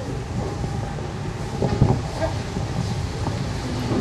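Steady low background rumble and hiss of an open-air gathering, with faint indistinct sounds from the seated audience.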